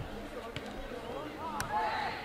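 Players and spectators shouting on an outdoor football pitch, short calls heard at a distance. There is a low thump at the start and a sharp knock about half a second in, with another about a second and a half in.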